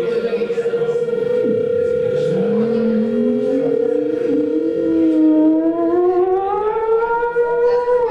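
A theremin sliding in pitch like a siren: a quick swoop down about a second and a half in, then a long slow rise. Under it a keyboard holds one steady, fluttering note.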